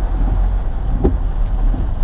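Low road rumble heard from inside a moving car, with a brief thump about a second in.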